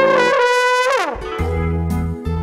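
Brass music from a cartoon score: one trumpet-like note held for about a second, which slides down at its end, followed by lower brass music.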